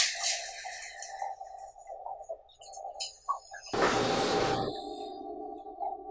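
Fingers rubbing and scratching through hair and over the skin of the scalp and forehead during a head massage, in short scratchy strokes, over quiet background music with sustained tones. About four seconds in comes a louder rustle lasting about a second.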